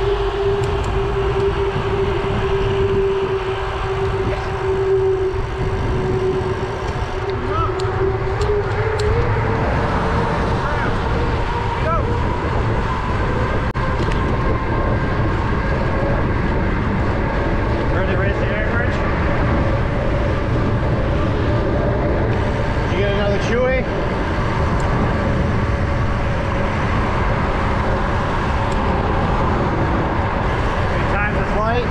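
Wind rushing over an action camera's microphone while cycling along a road, with car traffic passing close by. A steady hum holds for the first several seconds, then rises slightly in pitch.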